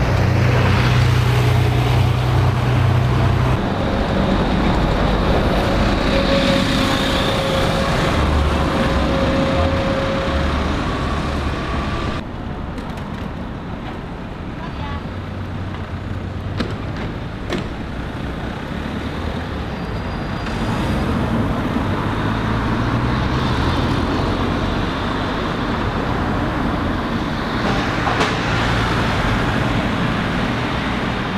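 A Mercedes-Benz Citaro single-deck bus driving past close by, its low engine hum fading out about three seconds in. Steady city road traffic follows, with cars and a van passing near the end.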